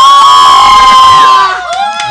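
Loud, high-pitched cheering shout held for about a second and a half, egging on a drinker downing a glass in one go; a shorter, lower call follows near the end.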